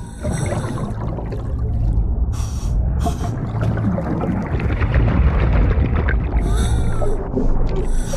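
Scuba divers breathing through their regulators underwater: short hissing breaths and bubbling exhaust over a steady low rumble. Hisses come about two and three seconds in and again near seven seconds.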